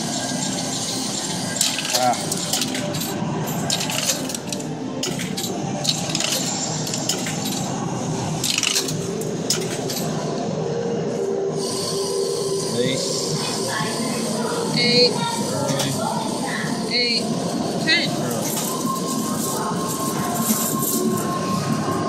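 Busy arcade din: background chatter and game-machine music, scattered metallic coin clinks, and a few short electronic bleeps a little past the middle.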